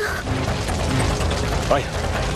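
Fire sound effect: a dense, steady crackling over a low rumble.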